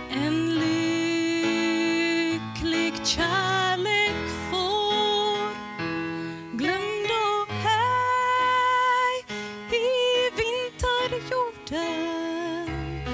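A woman singing a slow song into a handheld microphone over instrumental accompaniment, holding long notes between short breaths.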